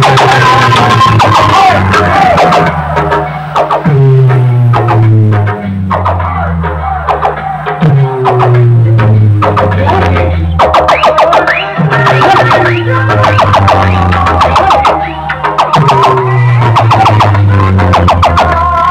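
Loud DJ music played over a horn-loudspeaker and power-amplifier sound system. A deep bass note slides downward and starts again about every four seconds.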